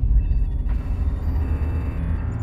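Deep, loud, steady low rumble of a cinematic trailer drone, its weight all in the bass.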